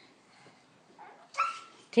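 A dog gives one short bark about one and a half seconds in, after about a second of near quiet.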